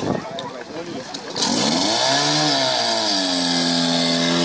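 Portable fire pump's engine coming up to speed about a second and a half in, its pitch rising and dipping, then running steadily at high revs as the pump is put to work.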